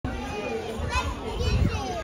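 Overlapping chatter of children's and adults' voices, with no single voice standing out, and a brief low rumble about one and a half seconds in.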